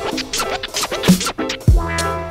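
Boom-bap hip hop beat with turntable scratching over the drums and bass, in a break between the rapped lines.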